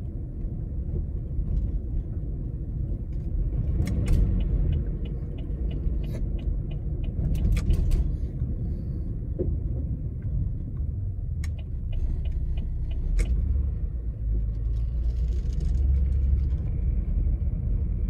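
Car driving slowly, a steady low rumble of engine and tyres heard from inside the cabin, with a run of light ticks a few seconds in.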